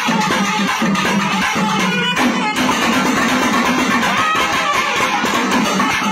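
Nadaswaram ensemble playing a reedy melody together, loud and continuous, over thavil drums beating rapid strokes.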